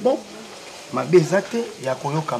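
A man speaking in short phrases over a steady faint crackling hiss of background noise.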